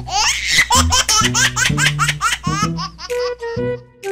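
A woman laughing in a rapid, high-pitched run of giggles over background music; the laughter dies away near the end.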